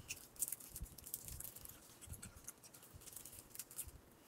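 Plastic wrapper of a small cherry lollipop crinkling and crackling in short spells as it is picked at and peeled off by hand.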